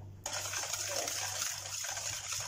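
Hand wire whisk beating yogurt into a runny egg, sugar and oil cake batter in a bowl: a steady wet whisking noise that starts about a quarter second in.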